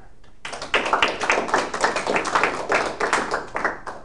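Audience applause, many hands clapping in an irregular patter. It starts about half a second in and stops just before the end.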